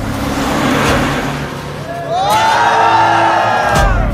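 Film trailer soundtrack: a noisy whoosh swelling for about two seconds, then a pitched sound effect that rises and falls over about a second and a half and cuts off suddenly, a transition into the next title card.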